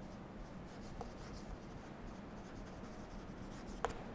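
Chalk writing on a blackboard: faint scratching strokes as a word is written, with a sharper chalk tap just before the end.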